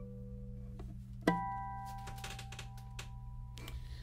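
Kala Elite all-flame-maple tenor ukulele played quietly: the notes of the previous phrase fade, then a single plucked note or chord about a second in rings out slowly. It is damped shortly before the end, followed by a few faint clicks.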